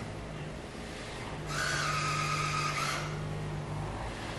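iRobot Braava Jet 245 mopping robot running on a hardwood floor: a low steady hum, with a louder hissing buzz for about a second and a half near the middle.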